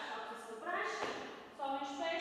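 A woman speaking in two short phrases, with no other clear sound.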